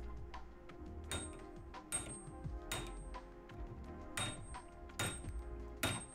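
Six sharp taps of percussive maintenance, seating a 3D-printed motor shaft back onto a stepper motor through a metal tube. They come about a second apart, each with a brief high metallic ring, over background music.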